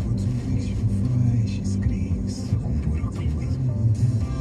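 Car radio playing music with singing inside the cabin of a moving car, with engine and road noise underneath.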